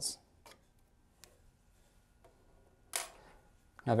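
A few faint, sparse clicks of small metal parts being handled as a laser head's aluminium air-assist cone is loosened on its set screw and drops free.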